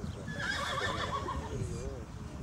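A horse whinnying: one quavering call of about a second and a half whose pitch falls as it goes.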